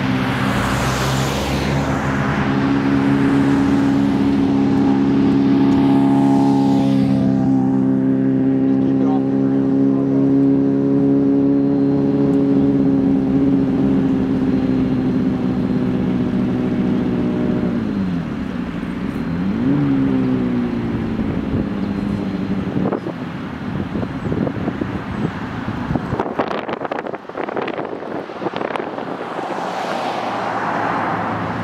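Vehicles running along the road, with a steady low engine drone that dips and then rises in pitch about two-thirds through. Scattered knocks and clicks follow near the end.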